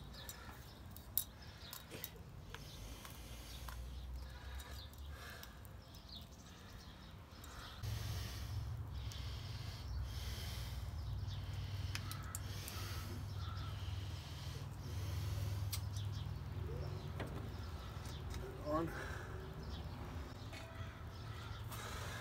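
Faint squishing and small clicks of wheel-bearing grease being packed by hand into a ball bearing. A low steady rumble grows stronger about a third of the way in.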